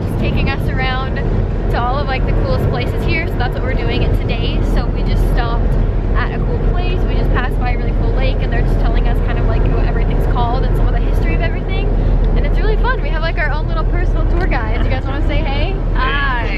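Steady low rumble of a van driving, heard from inside its cabin.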